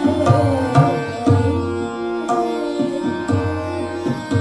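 Hindustani classical vocal music: tabla strokes with deep bass-drum hits over a steady tanpura drone, while a woman's voice holds a long note that slides down in the middle.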